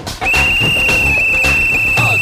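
Referee's whistle blown in one long, steady blast of about two seconds, starting a quarter of a second in, as a kabaddi raider is tackled to the ground, calling the end of the raid. Background music with a beat plays underneath.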